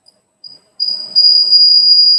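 A loud, steady high-pitched whine on the video-call audio, holding one pitch. It starts faintly about half a second in and becomes loud just under a second in, as the remote speaker's audio line opens.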